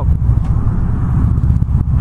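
Victory Cross Country motorcycle's V-twin engine running steadily while cruising, a continuous low rumble.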